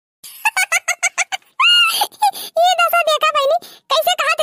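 A cartoon character's voice talking rapidly, with a rising exclaimed syllable about one and a half seconds in.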